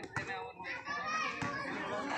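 Several raised voices calling and shouting at once, with two short knocks, one near the start and one about a second and a half in.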